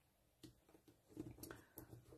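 Near silence, with a few faint, soft handling sounds as hands press an inked stamp down onto card.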